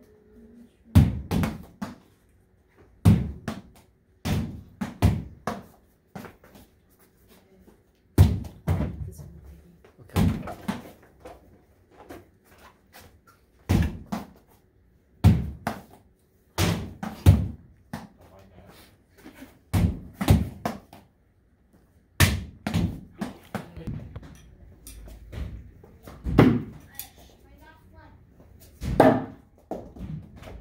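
A small ball thrown against a wall and hard floor, bouncing and being caught, with sharp impacts every couple of seconds, often two in quick succession.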